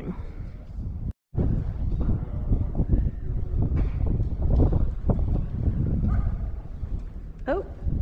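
Wind buffeting the microphone, a heavy low rumble with no steady machine tone. There is a short break in the sound just after a second in, and a brief voice near the end.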